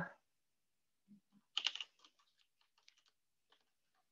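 Typing on a computer keyboard: a quick run of key clicks about one and a half seconds in, then a few fainter, scattered key taps.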